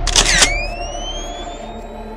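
Edited-in intro sound effect: a short noisy swish-and-click burst in the first half second, then a rising tone that levels off and fades away, over the low tail of the intro music dying out.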